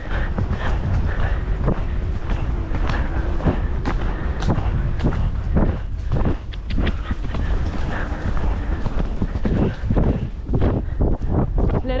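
Horse cantering along a soft woodland dirt track, its hoofbeats repeating in a steady rhythm, under heavy wind rumble on the helmet-camera microphone.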